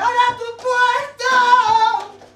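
A female flamenco singer (cantaora) sings a loud, high held line in three long, ornamented phrases. Her pitch wavers and bends within each note.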